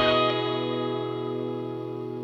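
Closing chord of a rock song, on distorted electric guitar, held and ringing out while slowly fading.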